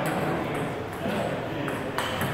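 Table tennis ball clicking on a table and paddle: a few sharp ticks, the clearest near the end.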